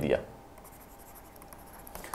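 Faint scratching of a stylus writing by hand on a tablet, a short run of pen strokes after a spoken word ends at the very start.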